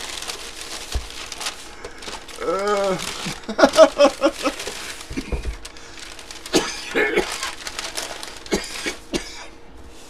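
Paper and plastic packaging rustling and crinkling as a box is unwrapped by hand, with a man laughing about three seconds in.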